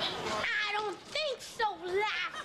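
Young children's high-pitched voices: several drawn-out vocal sounds that rise and fall in pitch, with no clear words.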